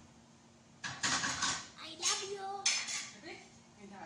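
Dishes and metal cookware clattering as they are handled at a kitchen counter, starting about a second in with a run of sharp clinks and knocks over the next two to three seconds.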